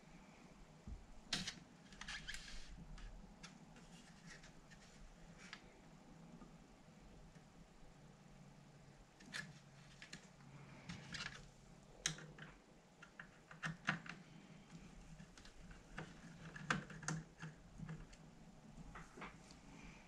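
Sporadic light clicks, taps and small rattles from hands and a screwdriver working on a Sinclair QL's plastic case and circuit board as the board's retaining screws are undone, over a faint steady room hum.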